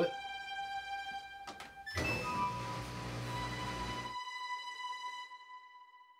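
Background music with sustained tones. About one and a half seconds in there is a click, then about two seconds of a front-loading washing machine starting up, a noisy rush over a low hum, which cuts off suddenly.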